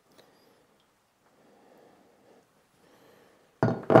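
Near quiet, with faint soft rustling twice in the middle; a man's voice starts just before the end.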